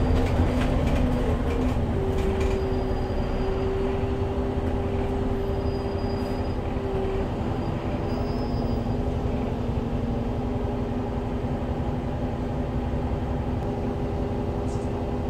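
Interior of a SOR NB12 city bus on the move: its Iveco Tector six-cylinder diesel and ZF automatic gearbox running with a steady drone and hum. The engine note steps down in pitch about two seconds in, with a few light rattles in the first seconds.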